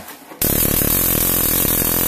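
Stun gun built into a flashlight, its electrodes arcing with a loud, rapid crackling buzz that starts about half a second in and holds steady.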